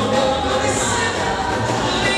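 A church choir singing a gospel song, many voices together, amplified through handheld microphones.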